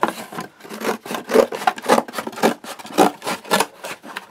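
Scissors cutting through a cardboard box, a rasping crunch with each snip, about three snips a second.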